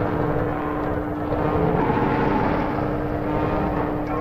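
Cartoon sound effect of a motor vehicle running loudly, a dense rumbling noise that swells about halfway through, over a steady low hum.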